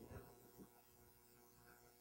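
Near silence: room tone with a faint steady electrical hum.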